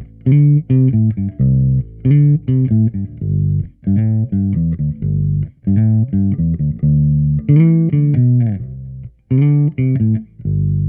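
Gibson ES-Les Paul bass played on both pickups through a Trace Elliot Elf 200-watt head and a 1x10 cabinet with an Eminence Neo speaker, EQ flat with bass and treble at noon. It plays a bass line of separate plucked notes, and about three-quarters of the way through one note slides down. The tone is a mix of the e609 mic on the cabinet and the amp's direct out.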